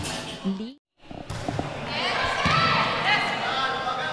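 Volleyball match sound in a large gym. The audio cuts out for a moment just under a second in, then the ball thuds a few times and players shout and call out.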